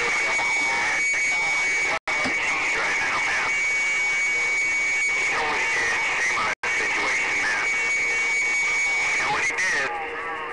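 CB radio receiving a crowded band of long-distance skip: loud static and garbled, overlapping distant voices under a steady high whistle. The audio cuts out for an instant twice.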